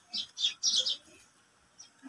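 Small birds chirping: a handful of short, high chirps in the first second, then quiet.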